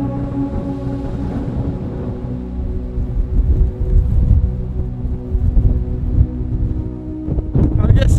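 Background music with long held tones, joined from about three seconds in by strong gusts of wind buffeting the microphone. The music stops shortly before the end, leaving the wind.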